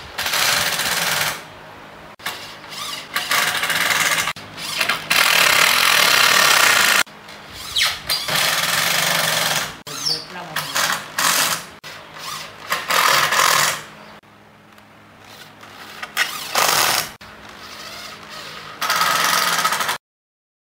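Corded electric drill driving screws into pallet wood, running in repeated bursts of a second to a few seconds with short pauses between.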